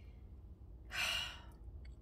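A woman's single sigh: one breathy exhale about a second in, lasting about half a second, over a faint steady low hum.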